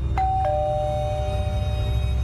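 Doorbell chiming a two-note ding-dong, a higher note followed a moment later by a lower one, both ringing on, over low background music.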